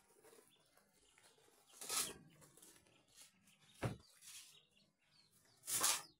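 Ducklings scuffling in a cardboard box while being handled: three short rustling bursts about two seconds apart, the middle one a sharp knock, with faint peeping between them.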